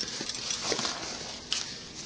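Handling noise of a nylon backpack being worked by hand: straps and webbing rustling, with a few faint light ticks.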